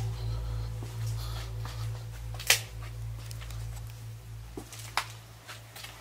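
Steady low hum in a dark empty room, with scattered faint clicks and two sharper knocks about two and a half seconds apart.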